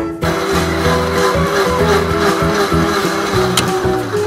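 Upbeat background music over a toy blender's whirring motor, which stops with a click near the end.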